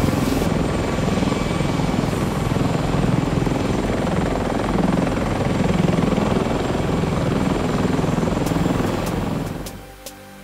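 Helicopter sound effect: rotor and engine running steadily, fading out just before the end.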